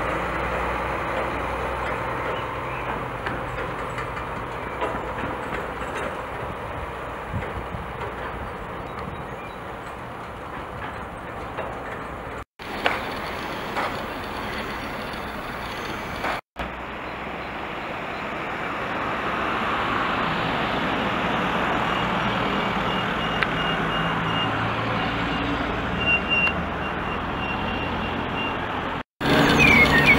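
A heavy truck's diesel engine running, mixed with road traffic. In the later part a construction vehicle's reversing beeper sounds repeatedly. The sound drops out suddenly and briefly three times.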